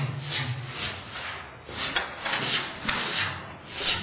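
Slowed-down, low-pitched sound of a boy swinging a pole and moving his feet. It comes as a string of rushing, scuffing swells, several a second, with a deep drawn-out vocal sound in the first second.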